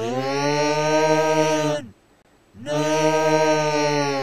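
A creature's deep, drawn-out yell, heard twice: each lasts about two seconds, rising in pitch as it starts and sagging as it dies away, with a short gap between.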